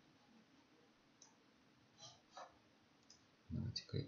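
Faint computer mouse clicks, a few scattered short clicks while panels are closed in the program, followed by a louder, low sound near the end.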